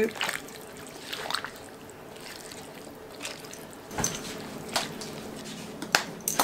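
Liquid trickling and dripping into a crock pot full of chopped soup vegetables and beef, with a few light knocks.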